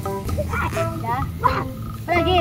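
Children's voices calling out over background music with held melodic notes.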